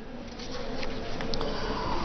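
A faint steady buzzing hum over background hiss, slowly growing louder.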